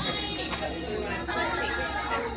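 Background chatter of many shoppers talking at once in a busy store.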